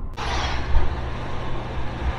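Inside the cabin of a 1977 Ford Maverick cruising at highway speed: a steady rush of tyre and wind noise over the even drone of its 250 straight-six. The sound cuts in abruptly just after the start.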